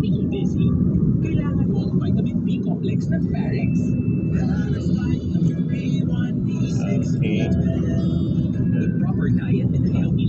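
Steady low rumble of a car's engine and tyres on the road, heard from inside the cabin while driving, with indistinct voices over it.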